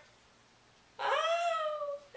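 A woman's high-pitched, drawn-out vocal whine, about a second long, sliding up and then slowly down in pitch. It comes after a second of near silence.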